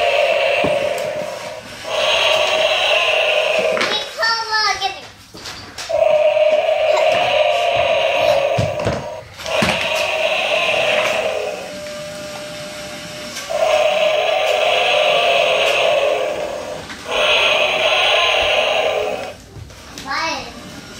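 A battery-operated toy dinosaur's electronic roar sound effect playing over and over, in bursts of two to four seconds with short gaps. A brief warbling chirp comes about four seconds in.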